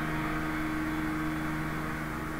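A steady low electric hum with a buzzing edge, holding one pitch throughout.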